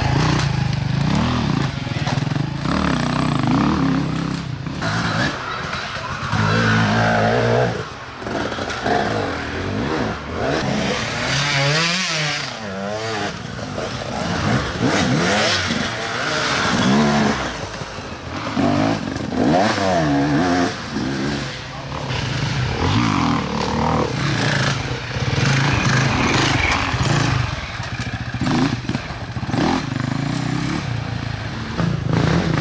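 Off-road enduro motorcycles revving hard as they ride through a wooded trail, one after another. The engine note rises and falls again and again through the throttle changes, with one sharp swoop up and down near the middle.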